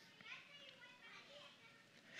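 Near silence: room tone with faint, distant children's voices.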